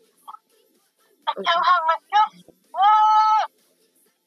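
High-pitched wordless vocal sounds from a person's voice: a few short squeaky sounds, then one held, steady note near the end.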